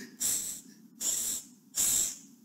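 Three short hisses about a second apart, each a brief spray-like burst of high hiss, matching the squirting syringe in the animation.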